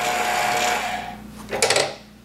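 Motor of a Bottle-Matic round-bottle labeling machine running a labeling cycle, a steady whir with a fixed whine, winding down and stopping about a second in. Near the end comes a short clatter of clicks and knocks as the labeled bottle is handled out of the machine.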